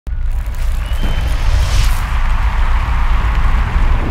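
Intro title music for a sports broadcast: a loud, deep bass rumble under a hissing wash, with a whooshing sweep about two seconds in.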